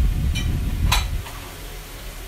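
Low rumbling knocks during the first second, with a faint brief clink and then one sharp click about a second in.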